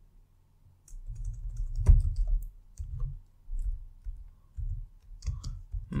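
Typing on a computer keyboard: an irregular run of key clicks with dull thumps, starting about a second in and stopping shortly before the end.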